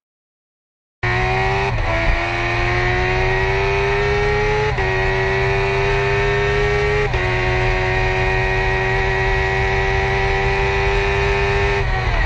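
2015 Kawasaki H2R's supercharged inline-four engine under hard acceleration, cutting in suddenly about a second in. Its pitch climbs slowly and drops sharply at three upshifts, then holds high and steady.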